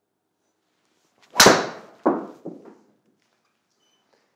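Honma XP-1 driver striking a golf ball on a full swing: one sharp, loud crack about a second and a half in, followed by two fainter knocks.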